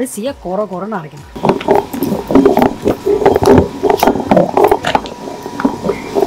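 Hand-turned stone grinder (aattukal) working wet idli batter: a rough, choppy run of stone grinding and batter squelching that starts about a second and a half in, after a brief bit of voice.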